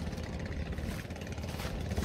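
A low, steady engine hum, like a boat motor idling nearby.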